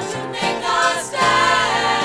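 A vocal group singing in harmony with instrumental accompaniment, played from a digitized 1976 vinyl LP.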